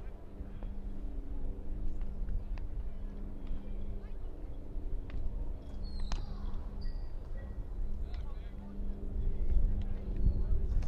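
Outdoor ballfield ambience: a low rumble with a steady hum and faint distant voices, and one sharp click about six seconds in.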